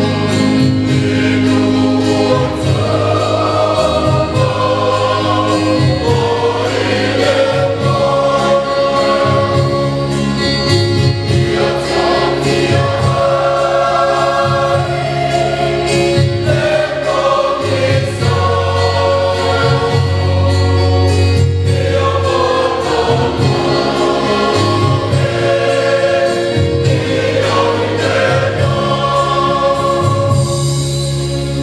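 A mixed church choir of men and women singing a Samoan hymn together in harmony, with long held notes over a steady low bass line.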